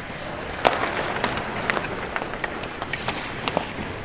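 Ice hockey skates scraping over the ice, with a string of sharp clacks from sticks and puck, the loudest about two-thirds of a second in, echoing in a large empty arena.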